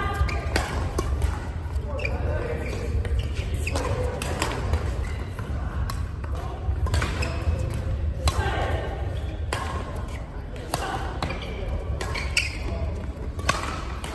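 Badminton rally: rackets hitting the shuttlecock with sharp cracks a second or two apart, echoing in a large sports hall, over a steady low hum and voices from around the hall.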